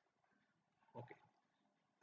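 Near silence: room tone, broken only by a single softly spoken 'okay' about a second in.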